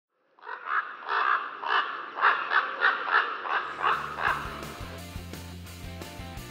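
A bird calling over and over, about three short calls a second, for roughly four seconds. Music with a bass line and plucked notes comes in partway through and takes over as the calls stop.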